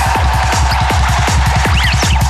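Dark psytrance electronic music: a fast, steady beat over a pulsing bass, with short chirping sound effects near the end.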